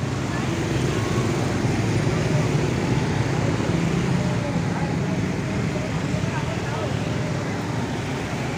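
A large coach bus's diesel engine running at low revs as the bus creeps slowly forward, a steady low hum, with voices and street traffic in the background.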